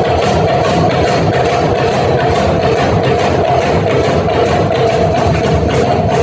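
Kerala nadan pattu folk song: a group of girls singing together over hand drums beating a fast, steady rhythm.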